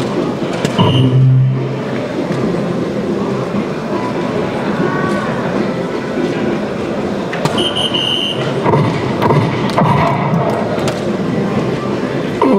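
Soft-tip darts striking an electronic dartboard, with short electronic tones from the machine, over a steady din of chatter and other dart machines in a busy hall.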